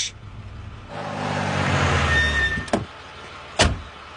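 Taxi cab driving up and pulling to a stop, its engine and tyre noise swelling and then dying away with a brief high squeak. A click follows, then the thud of a car door shutting.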